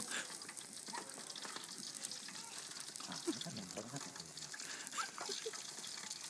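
A lull in a group's conversation: a few low, indistinct murmurs over a steady hiss.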